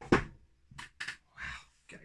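Two short, sharp knocks about a quarter of a second apart as a large toy figure is set down, followed by a brief rustle.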